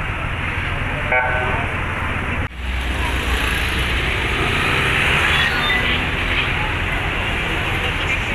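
Busy street ambience: traffic noise and the murmur of a crowd of bystanders, with a short car-horn toot about a second in. The sound breaks off abruptly about two and a half seconds in and resumes at a similar level.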